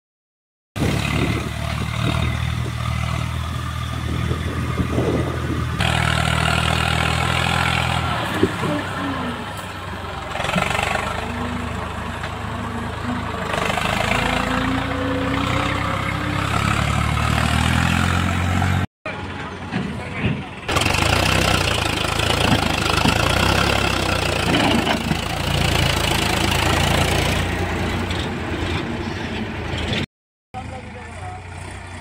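Diesel farm tractor engines running under load while hauling loaded trailers, in several clips with abrupt cuts between them. In the middle, an Eicher 380's engine note climbs steadily as it pulls.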